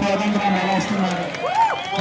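Speech: people's voices talking, with a short tone that rises and falls about a second and a half in.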